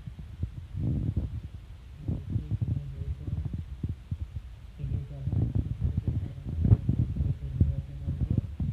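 A woman talking in short spells, low and muffled, over low thumping and rubbing close to the microphone.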